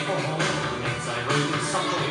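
Cantopop dance song playing with a steady beat.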